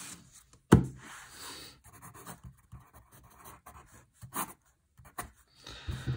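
Dixon Ticonderoga HB No. 2 graphite pencil writing on paper: a sharp tap about a second in, then short scratching strokes with pauses between them.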